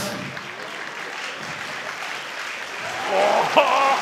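Audience applauding steadily in an arena, with a man's voice starting over the clapping about three seconds in.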